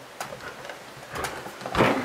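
Hands pressing down on the closed clear acrylic lid of a stamping press tool, making a few light clicks and then one louder thump near the end.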